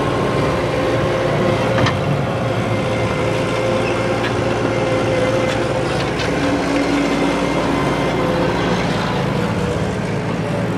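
Skid-steer loader's engine running under load, its pitch dropping and rising again as it pushes a wrecked car over dirt, with a couple of short metal clanks about two and six seconds in.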